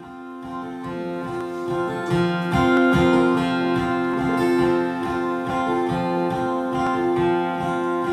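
Acoustic guitar with a capo playing a song's instrumental introduction, a repeating pattern of low notes under ringing chords, growing louder over the first couple of seconds.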